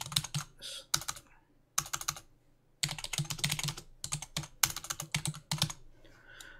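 Typing on a computer keyboard: several bursts of rapid keystrokes with short pauses between.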